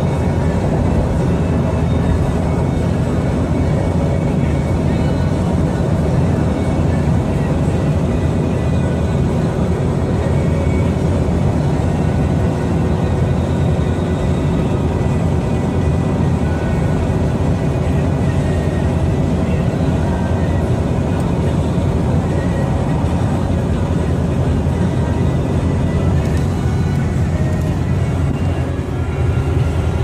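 Steady cabin noise of a Toyota Land Cruiser (FZJ80/LX450) cruising at road speed: a continuous engine and tyre drone that stays loud and even.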